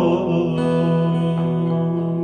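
A male voice holds one long final sung note over acoustic guitar chords left ringing, with a few more light strums partway through, as the acoustic nasheed comes to its close.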